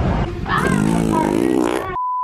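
Pier crowd noise cut off abruptly, followed by a comic edited transition sound effect: a wavering, voice-like sound over static hiss, ending as a steady test-pattern beep begins.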